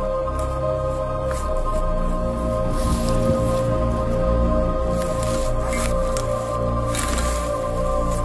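Background music of steady held ambient chords, with short rustles of dry grass being brushed through a few times, loudest about three and seven seconds in.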